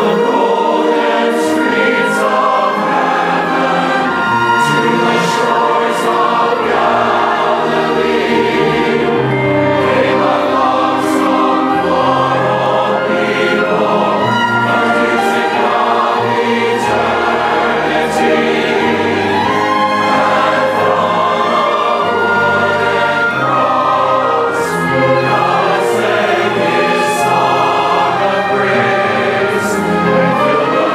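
A large church choir singing a hymn anthem with orchestral accompaniment, the music going on without a break.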